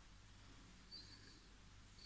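Near silence: room tone with a low steady hum, and one faint brief soft sound about a second in.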